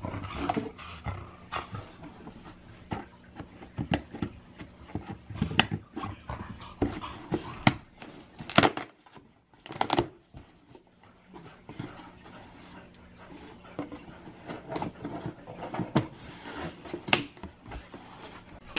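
A pet dog close to the microphone, with sharp rips, scrapes and knocks as a cardboard shipping box's tape is slit and its flaps are pulled open onto packing paper.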